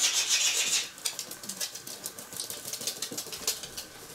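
Pugs' claws clicking on a wooden floor as they scurry along, a rapid run of light ticks, louder in the first second.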